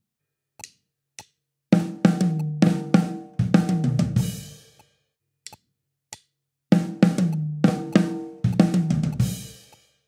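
Drum kit playing the same one-bar fill twice, each time after two short clicks. Each fill is a quick run of snare and tom strokes, including a flam, with a bass drum stroke. It ends in a crash cymbal struck with the bass drum that rings out and fades.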